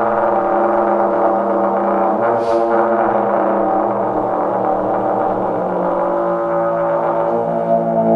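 Trombone holding long, droning notes over double bass and drum kit, with a cymbal struck once about two and a half seconds in.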